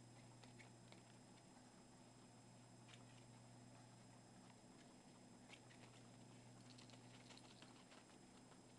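Near silence over a faint steady hum, with scattered soft clicks and rustles from guinea pigs moving and sniffing close to the microphone, a quick run of them about seven seconds in.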